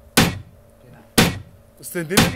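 Two single electronic drum-machine sample hits, played through the club's sound system about a second apart. They are isolated beats from a drum rack being auditioned for groove timing.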